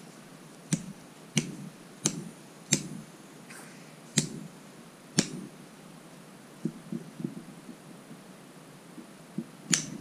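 A series of sharp clicks from toy doctor's instruments being handled, about one every two-thirds of a second at first, then a few fainter ticks, and one more sharp click near the end.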